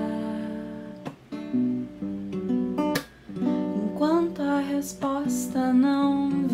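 A woman singing softly over her own acoustic guitar, the guitar strummed and its chords ringing under a slow, gliding melody. The sound dips briefly twice, about one and three seconds in, between phrases.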